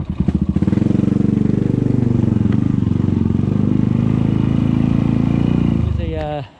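Suzuki Thunder motorcycle engine running at low revs while riding slowly over a rough, rocky dirt track, with an even, rapid exhaust pulse. The pitch sags a little midway and picks up again.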